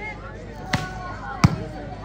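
A volleyball struck twice by players' hands and arms during a rally, two sharp smacks about 0.7 s apart, the second louder.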